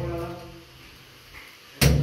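Mostly speech: a man's drawn-out last word trailing off, a lull of about a second, then his talking starting again near the end.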